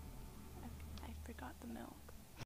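A faint whispered voice says a few short words about halfway through, over a steady low hum, after the music has stopped.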